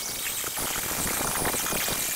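Die grinder spinning a carbide burr against a cast-iron Vortec cylinder head, rounding off the spark plug boss in the combustion chamber: a steady high whine over rough grinding noise.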